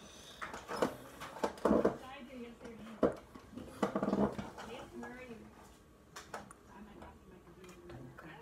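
Indistinct voices in short bursts, mixed with several sharp clicks and clatters in the first four seconds.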